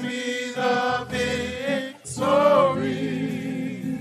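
Gospel singing: sustained sung notes with vibrato over held low chords, with a short break about two seconds in.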